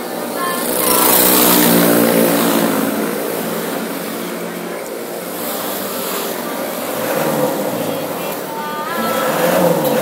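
Loud motor traffic noise that swells about a second in and eases off after a couple of seconds, over a woman's singing voice inside a city minibus.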